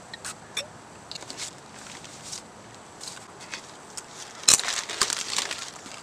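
Plastic mailer bag rustling and crinkling as it is handled, with a few scattered clicks early on and a loud burst of crinkling about four and a half seconds in.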